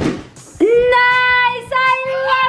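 A child's high voice singing long, steady held notes, the first beginning about half a second in after a short rush of noise.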